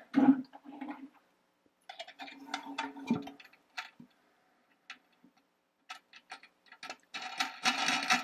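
Irregular small clicks and ticks of a washer and wing nut being fitted and threaded onto a toilet tank bolt under the tank, coming thick and fast in the last second.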